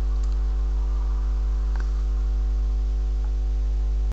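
Steady electrical mains hum: a low buzz with a stack of even overtones, unchanging throughout, with a couple of faint ticks.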